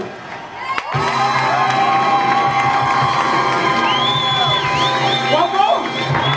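Audience cheering and shouting over loud live rock-and-roll party music. The sound dips briefly at the start, then comes back about a second in as a long held note that runs on for several seconds.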